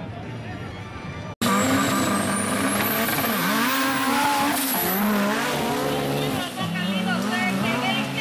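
Turbocharged off-road racing trucks with engines running loud and revving up and down repeatedly. A high whistle climbs in pitch over about three seconds. The sound comes in abruptly about a second and a half in.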